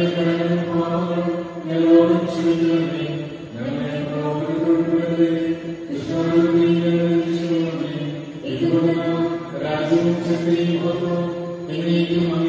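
Slow, chant-like vocal music with long held notes, each lasting about two seconds before the pitch shifts.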